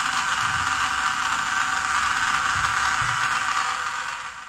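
Small DC gear motor driving a model conveyor belt, running with a steady whir and rattle that fades out near the end.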